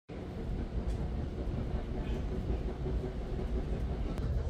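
Steady low rumble heard from inside a passenger rail car as the train runs.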